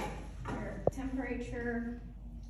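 A sharp click, then a person's voice for about the last second and a half, too unclear to make out as words.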